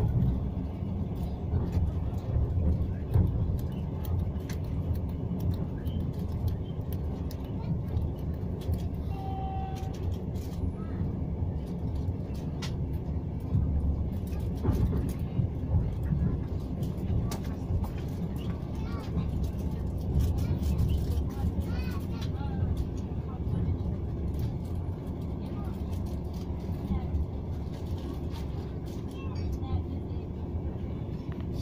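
Steady low rumble of a passenger train running at speed, heard from inside the carriage, with scattered faint clicks and knocks from the running gear. A brief high tone sounds about nine seconds in.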